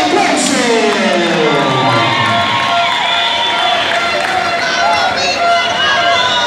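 Boxing crowd cheering and shouting, many voices overlapping, with one long drawn-out voice falling in pitch over the first two seconds.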